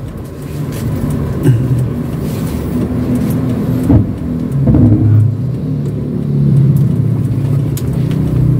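Inside the cabin of a 2007 Daihatsu Terios TX, its 1.5-litre four-cylinder engine running with road noise while driving, the engine still cold. A sharp knock comes about four seconds in, and the engine grows louder in the second half.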